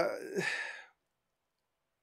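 A man's hesitant 'uh' trailing off into a breathy sigh that fades out within the first second, followed by complete silence.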